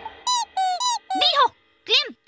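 Rubber squeaky ball squeezed several times: a run of short, high squeaks, then a longer one that drops in pitch, and another near the end.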